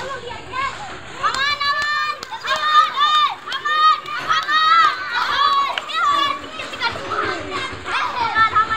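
Boys' high-pitched voices shouting and calling out during a rough-and-tumble game of kabaddi, loudest and most continuous from about a second and a half in to about six seconds.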